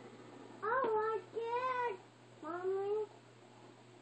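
A young child's voice making three short, high-pitched vocal sounds that bend up and down in pitch, in the first three seconds, with a light tap about a second in.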